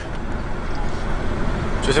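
Steady road and engine noise inside a moving car's cabin, a low even rumble.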